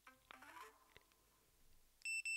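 Near silence, with a few faint clicks and a brief faint tone in the first second.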